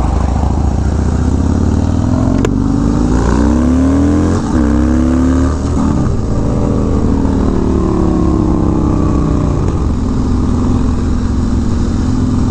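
Harley-Davidson Dyna V-twin with a Bassani exhaust pulling away and accelerating. The pitch climbs, drops at gear changes about four and a half and six seconds in, then holds steady at cruising speed near the end.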